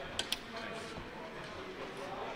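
Indistinct voices murmuring in the background, with two sharp clicks in quick succession a moment in.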